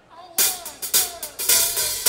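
Rock drum kit playing a short intro of snare and cymbal hits, about one every half second, leading into the song before the full band comes in.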